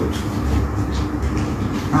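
A steady low rumble fills a pause in the talking.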